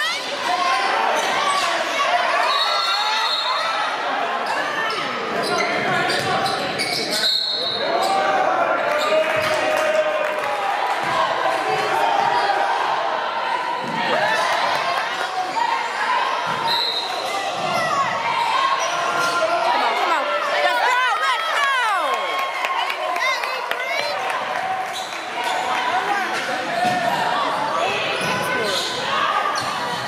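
Live sound of a basketball game in a gymnasium: a basketball bouncing on the hardwood court, with players' and spectators' voices running throughout.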